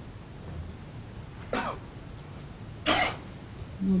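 A person coughing twice, two short sharp coughs about a second and a half apart, over a low steady room hum.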